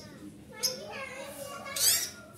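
Caged long-tailed shrike singing a varied, chattering run of voice-like notes, with a sharp note about half a second in and a loud sweeping note near the end.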